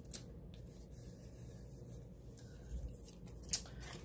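Faint rustling and a few light taps of paper cutouts being handled and pressed onto a planner page, over a low steady hum.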